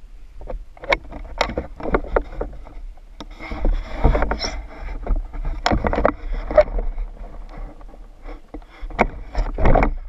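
Handling noise from a camera clipped to a pool skimmer pole as the pole and net are carried: irregular knocks, clicks and rustling over a low rumble, with louder stretches a few seconds in and again near the end.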